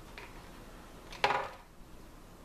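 A hollow plastic model-kit hull set down on a desk: one sharp knock a little past halfway, after a faint click.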